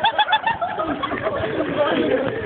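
Young men's voices whooping and shouting in horseplay: a quick run of short, high, rising yelps in the first half-second, then overlapping shouts.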